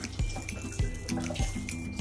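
Background music with a steady beat, over the rattle and patter of sugar sprinkles being shaken out of a jar onto iced cupcakes.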